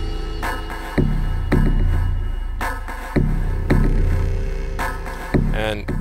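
Dark, film-score-style synth patch from a Propellerhead Reason Combinator playing dry with its effects bypassed: a sustained low drone with deep bass hits coming in pairs about every two seconds.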